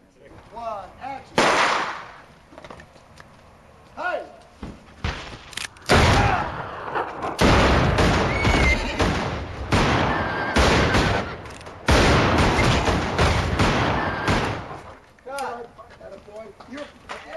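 Western movie gunfight soundtrack: sudden loud gunshots, one about a second and a half in and then a dense run of shots from about six seconds on, with men's shouts in among them.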